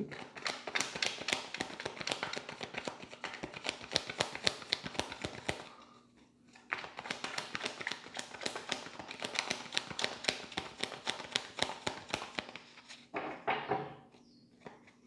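A tarot deck being shuffled by hand: a dense run of rapid card clicks and slaps, with a brief pause about six seconds in.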